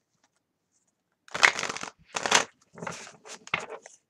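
A tarot deck being shuffled by hand: a run of about five quick shuffling strokes, starting about a second in.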